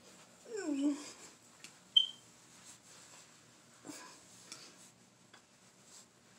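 A dog whining once: a falling, pitched cry about half a second in. About two seconds in comes a brief, sharp high squeak, and otherwise there are only faint small clicks.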